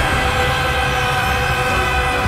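Intro soundtrack: a sustained, droning chord of several steady tones held over a low rumble.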